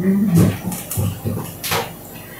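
Brief low voice sounds from a person in the first half second, then a single short hiss about a second and a half later.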